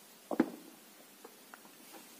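Handling of plastic Play-Doh toy parts: one short sharp knock about a third of a second in, then a couple of faint clicks over quiet room tone.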